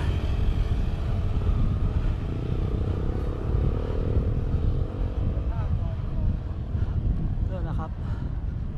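Wind noise on the microphone of a moving bicycle, with a motorcycle engine going by and rising in pitch from about three to five seconds in.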